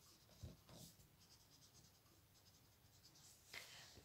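Faint scratching of a felt-tip pen writing on paper, a few short strokes in the first second, then near silence.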